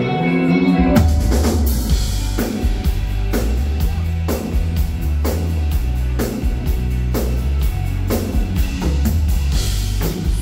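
Live rock band playing a song's instrumental intro: a held electric guitar chord, then about a second in the drum kit comes in with a steady beat under strummed electric and acoustic guitars.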